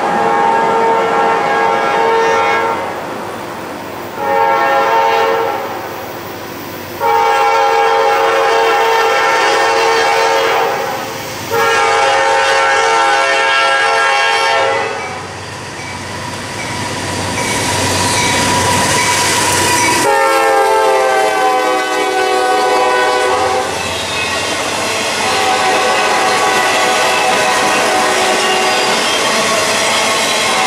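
Diesel locomotive air horn on a GE C40-9W sounding a series of blasts for the grade crossing: three long and one short. About 20 s in, one blast slides down in pitch as the locomotive passes. The rumble and wheel clatter of the passing freight cars follows.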